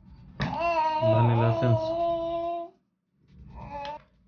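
A long drawn-out cry held at one steady, high pitch for about two seconds, the loudest thing here, followed near the end by a shorter, fainter voice sound.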